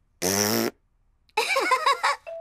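A cartoon child's voice blowing a short buzzing raspberry, about half a second long, as a demonstration for a pet gecko, followed by a few spoken words.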